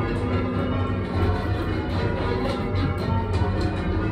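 A ring of eight church bells rung full circle in call changes, heard from the ringing chamber below the bells: a steady, even succession of strikes whose tones overlap and ring on.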